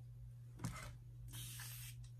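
Two squirts of a hand-pump spray bottle misting the hair, a short one and then a longer one, each a brief hiss.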